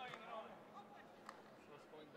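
Faint, indistinct voices in a large hall, with a single short click a little after a second in.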